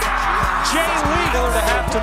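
Background music laid over the highlights.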